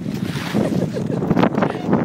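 Wind buffeting the microphone, with someone laughing in short bursts.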